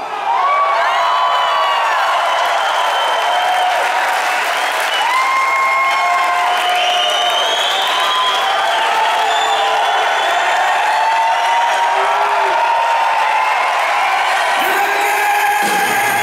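Theatre audience cheering, whooping and applauding after a song ends, with many shouts and whistles over the clapping. About fifteen seconds in, the band starts playing again.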